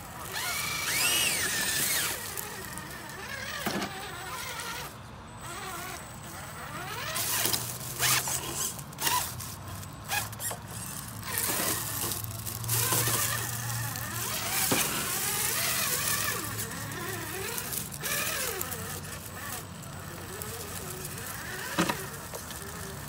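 Traxxas TRX-4 RC rock crawler working its way over rocks: its electric motor and gears whine in short, uneven bursts, and the tyres crunch through dry leaf litter.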